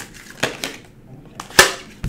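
A few sharp snaps and taps from a tarot deck being handled as a card is pulled, the loudest about a second and a half in.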